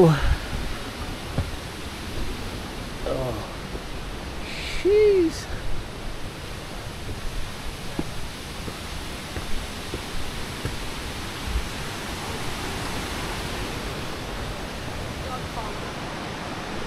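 A steady rush of running water: a constant, even noise with a few faint low thumps.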